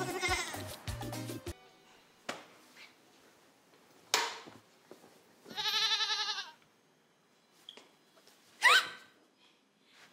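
Background music that cuts off about a second and a half in. Around six seconds in, a young goat bleats once: a single wavering call about a second long. A brief rising sound near the end is the loudest thing heard.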